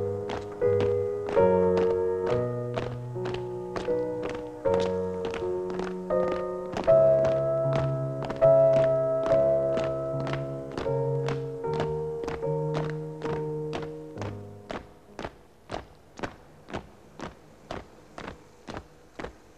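Band music in slow, held chords over the steady tramp of a column of marching feet, about two steps a second. The music stops about fourteen seconds in and the marching steps go on alone, fainter.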